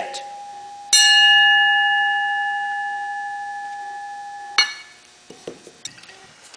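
Small aluminum plate struck once, ringing with a clear bell-like tone that fades slowly. About four and a half seconds in, a knock cuts the ring off, and a few light knocks follow.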